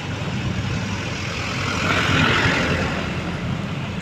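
Road traffic passing close by on a rough, partly unpaved road: a steady rumble of a truck's and motorcycles' engines, with a louder rush as a vehicle goes by about halfway through.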